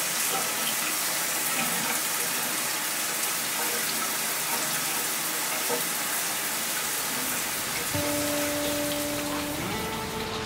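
Shower water spraying steadily from an overhead rain showerhead onto the tiles and a person's wet hair. About eight seconds in a held tone comes in and steps up in pitch just before the end.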